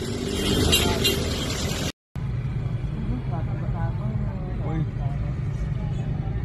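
Roadside crowd and traffic: a steady low rumble of passing vehicles with faint talking from the onlookers. The sound cuts out completely for a moment about two seconds in, then resumes a little quieter.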